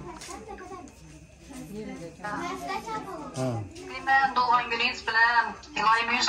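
Voices talking. From about four seconds in, a high-pitched voice grows louder: a video call played from a smartphone and picked up by a hand microphone held against it.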